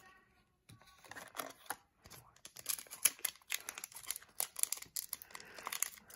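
Foil wrapper of a hockey card pack crinkling and tearing as it is pulled open by hand: a run of small crackles that begins about a second in and thickens after about two seconds.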